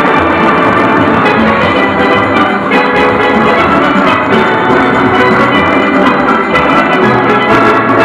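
A full steel orchestra playing loudly and continuously: massed steelpans sounding many sustained notes together over drums and percussion.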